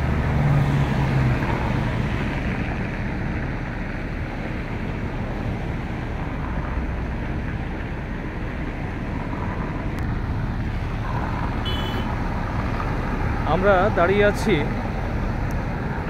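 Steady road traffic noise from cars driving along the street, with the engine hum of passing vehicles swelling near the start and again about halfway through.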